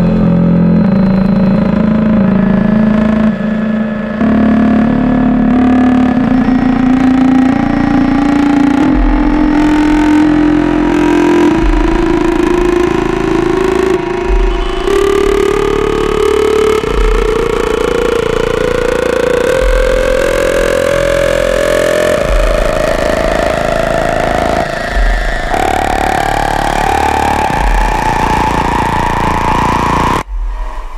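Dark ambient noise soundtrack: a droning tone that climbs slowly and steadily in pitch, like a revving engine, over a hissing, rumbling haze. Short low thuds come every two to three seconds from about nine seconds in, and the sound cuts off abruptly at the end.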